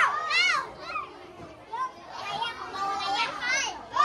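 Group of young children talking and calling out over one another, with a few high voices loudest at the very start.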